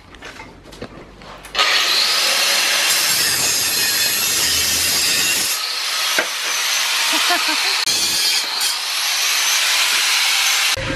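Angle grinder cutting metal, starting abruptly about a second and a half in and running on loud and steady, with a hissing, high-pitched grinding noise.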